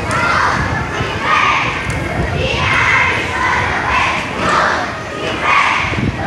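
A group of boys shouting a team cheer together, in loud repeated shouts about once a second.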